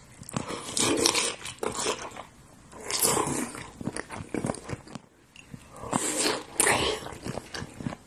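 Close, wet chewing, sucking and lip-smacking of raw trout sashimi bitten straight from a hand-held slab, with three louder smacking bursts: about a second in, around three seconds and near six seconds.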